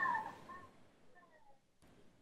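A woman crying, heard over a video call: a sobbing whimper that fades within about a second into a few faint, falling high-pitched whimpers.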